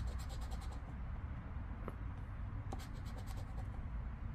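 A poker chip scraping the latex coating off a scratch-off lottery ticket in quick strokes. There is one run of strokes at the start and another about three seconds in.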